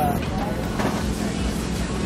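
Steady low rumble of outdoor background noise, with faint voices of people nearby.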